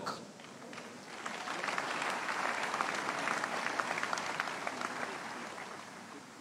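A large congregation applauding, the clapping swelling after about a second and dying away towards the end.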